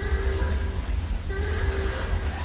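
A deep horn sounding two short blasts, each under a second, over a steady low rumble, like a ship's horn sound effect.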